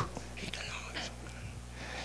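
A quiet pause between spoken phrases: a steady low electrical hum from the sound system, with a faint breathy hiss in the first second or so.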